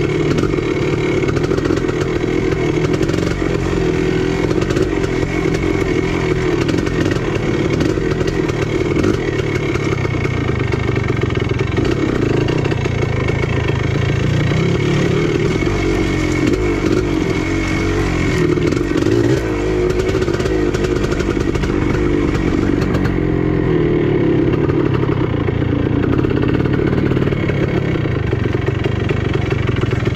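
Dirt bike engine running continuously at varying revs while the bike is ridden along a rocky woodland trail, heard from the bike itself.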